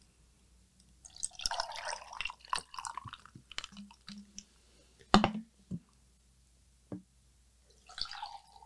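Cold brew coffee poured from a bottle into a glass of ice, splashing and gurgling for about three seconds. A few sharp clicks follow near the end.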